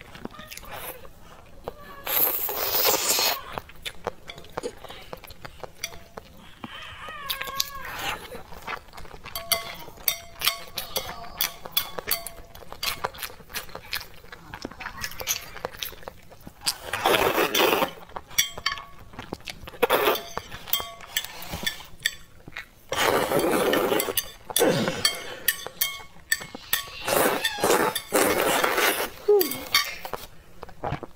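Close-up eating of spicy glass noodles: several loud slurps of a second or two, with many sharp clicks and clinks of chopsticks against a plastic tray in between.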